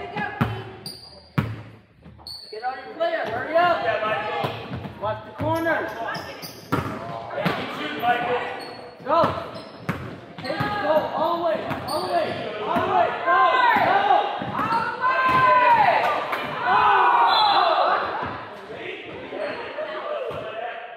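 A basketball dribbling and bouncing on a hardwood gym floor, with sneakers squeaking as players run and cut, busiest in the second half. It echoes in the large hall.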